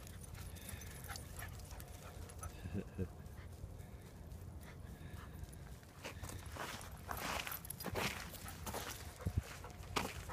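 Footsteps crunching on a gravel trail among a pack of walking dogs, with a short whine about three seconds in. The crunching strokes get denser and louder in the second half.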